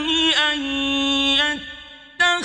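Male Quran reciter chanting Arabic in melodic tajweed style, holding one long steady note after a short ornamented glide, then fading out near the end.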